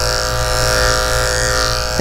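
Electric pet grooming clipper running with a steady, even buzz while clipping a puppy's curly coat.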